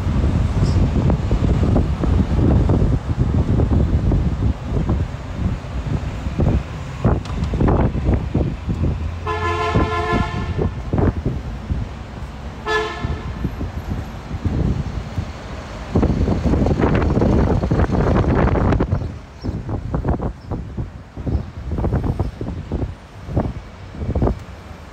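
Street traffic with wind buffeting the microphone while riding through the city. A vehicle horn honks twice: one long blast about nine seconds in, then a short toot about three seconds later.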